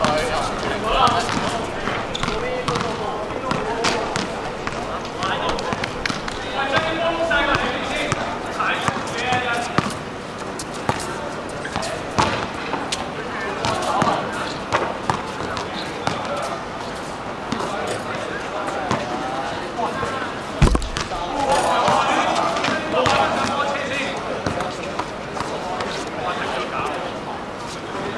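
Basketballs bouncing on a hard court, many separate bounces from several balls at once, with players' voices chattering and calling out. One heavy thump about three-quarters of the way through.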